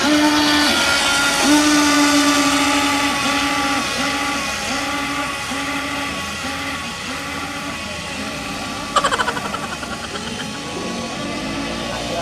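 The twin electric motors of a radio-controlled toy speedboat whining at a steady pitch, then cutting in and out in short pulses every half second or so as the boat runs off across the water, slowly growing fainter. A brief rattle about nine seconds in.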